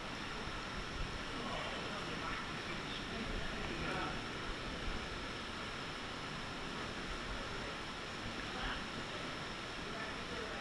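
Steady rush of water in a rock gorge, with a few small splashes from swimmers and faint, indistinct voices.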